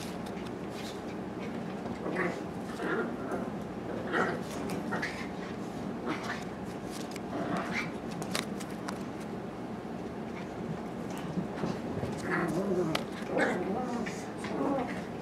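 Pet dogs giving short, scattered vocal calls in the background, with light clicks from cards being handled.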